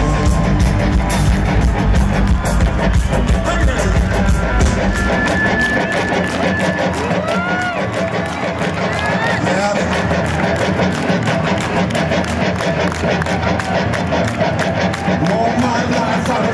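Live rock band playing through a stadium sound system, heard from inside the crowd with fans' voices close by. The heavy bass drops away about five seconds in.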